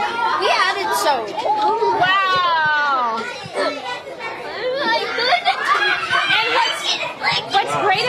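Excited children's voices and exclamations overlapping, no clear words, with one long, high-pitched cry that falls in pitch about two seconds in.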